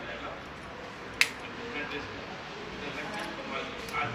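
Faint talking in the background, with one sharp click about a second in.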